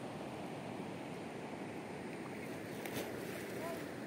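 Steady rushing of a river flowing over a stony bed. A few short rising-and-falling whistled calls come in near the end.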